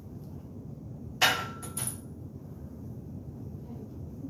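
A loaded barbell set down onto the steel rack's hooks: one loud metallic clank a little over a second in, quickly followed by two lighter clinks with a brief ring.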